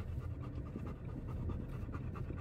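A dog panting steadily inside a moving car, over the car's continuous low road and engine rumble.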